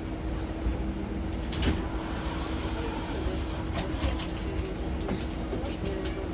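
Cabin sound of a Mercedes-Benz eCitaro G articulated electric bus standing at a stop: a steady hum with one constant tone over a low rumble. A few sharp knocks and clicks come through as passengers board.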